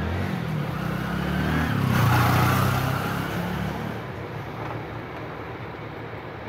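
A motor vehicle passing: its engine and road noise swell to a peak about two seconds in, then slowly fade.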